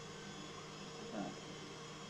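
Quiet room tone with a steady low hum, and a faint short vocal sound just past a second in.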